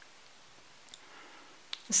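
Near silence with quiet room tone, broken by a faint click about a second in and a sharper click just before a woman starts to say "So" at the very end.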